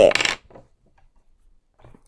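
A spoken word trailing off, then about a second and a half of near silence, with faint ticks near the end as hands settle on a sheet of paper on a desk.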